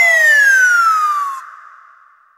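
A comic falling-whistle sound effect: one long whistle tone gliding steadily down in pitch, which fades away about a second and a half in.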